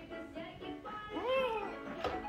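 Background music, with one short high-pitched vocal call from a small child about halfway through, rising then falling in pitch.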